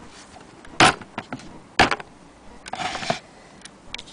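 Two sharp clacks about a second apart, then a brief scraping rustle, as the antique Willcox & Gibbs hand-crank sewing machine and its fabric are handled.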